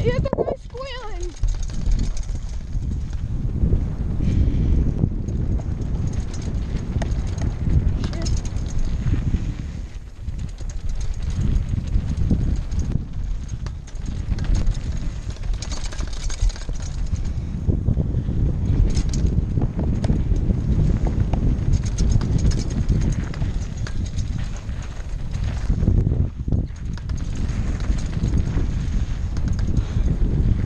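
Mountain bike riding fast down a loose dirt and gravel trail: a steady, loud rumble of tyres and wind on the rider-mounted camera, with frequent knocks and rattles from the bike over bumps.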